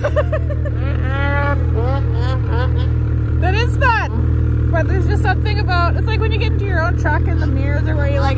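Lynx Boondocker snowmobile engine idling steadily, with voices talking over it.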